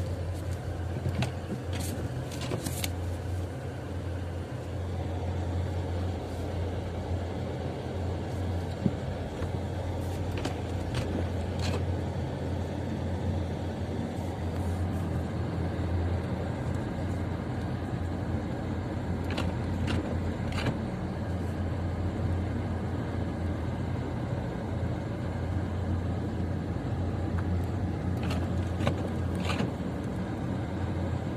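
Car interior noise while driving on a snowy road: a steady low engine and road drone, with a few short clicks now and then.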